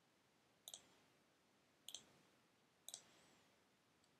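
Three faint clicks about a second apart, each a quick double tick, from the mouse or keys of a computer being operated.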